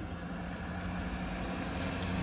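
Road and tyre noise inside a moving Tesla's cabin, with a steady low hum.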